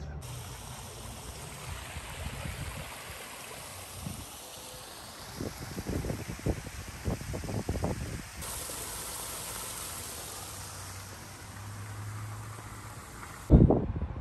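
Small artificial rock waterfall splashing steadily into its pool, with low bumps on the microphone in the middle and a loud thump near the end.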